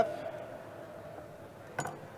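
A single sharp knock of a kitchen knife against a wooden cutting board near the end, over a faint steady background hum.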